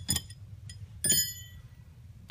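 Small metal pistol parts and hand tools being handled: a few light clicks, then a sharp metallic clink about a second in that rings briefly.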